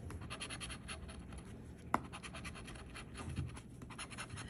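A coin scraping the latex coating off the bonus spots of a scratch-off lottery ticket in quick, repeated strokes, with one sharp click about halfway through.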